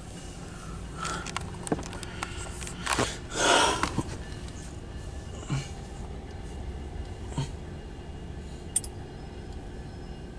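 Steady low hum inside a car cabin, with a few small clicks and knocks from handling the phone. About three seconds in there is one short noisy rush.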